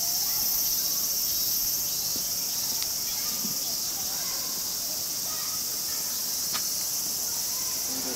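A steady chorus of cicadas: an even, high-pitched drone.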